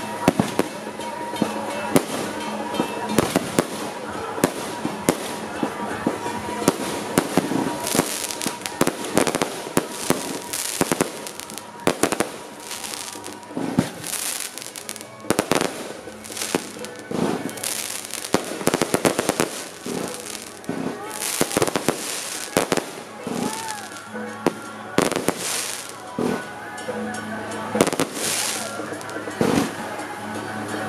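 Fireworks and firecrackers going off without pause: a dense, irregular run of sharp bangs over continuous crackling, as fountain and aerial fireworks are set off in a firecracker salute.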